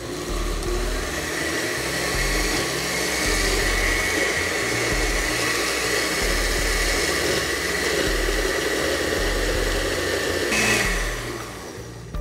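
Countertop blender motor running steadily through a thick rocoto sauce while oil is drizzled in to emulsify it. Near the end the motor is switched off and winds down with a falling pitch.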